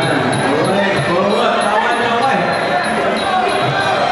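Traditional Muay Thai ring music (sarama): a wavering, sliding pi oboe melody over a steady drum beat, with small ching cymbals ticking in time.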